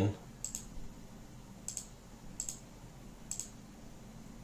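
Four sharp computer-mouse button clicks, about a second apart, over a faint steady hiss.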